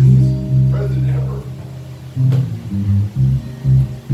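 A live band playing, led by a bass guitar holding low notes that change pitch every half second or so, with plucked guitar over it.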